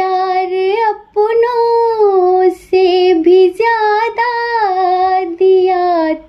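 A high voice singing a slow Hindi song unaccompanied, in long held notes that bend in pitch, broken by short breaths about a second, two and a half seconds and three and a half seconds in.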